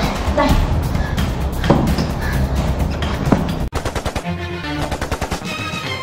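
Dense, loud rattling and crackling storm noise, a sound effect of wind and flying debris, that cuts off suddenly about three and a half seconds in. A short music sting with a fast pulsing beat follows.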